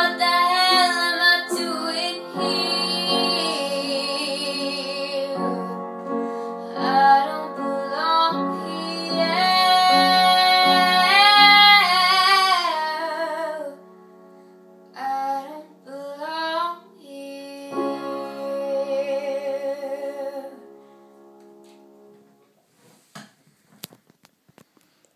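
A female voice singing the closing phrases of a song over steady instrumental accompaniment, with long held notes. The singing is loud and sustained through the first half, then quieter phrases follow and the music fades out a couple of seconds before the end.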